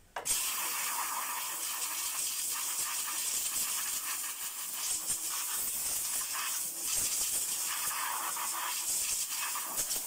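Compressed-air blow gun hissing steadily as it blows dirt out of a car's air filter housing.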